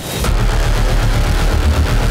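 Pro 4 short-course off-road race truck's engine running under power as the truck slides through loose dirt, cutting in abruptly with a sharp hit at the start.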